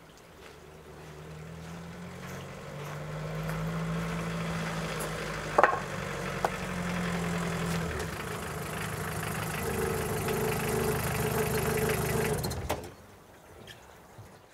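A small car's engine running as the car draws up, growing louder over the first few seconds, with two sharp clicks about halfway through. The engine is switched off about a second before the end.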